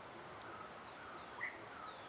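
Faint outdoor ambience with scattered short bird chirps, one brief louder chirp about one and a half seconds in.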